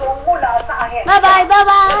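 A young child's high voice in a sing-song, calling 'bye-bye' and holding long steady notes in the second half.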